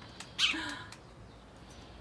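A sparrow gives one short, falling chirp about half a second in, with a few light clicks around it.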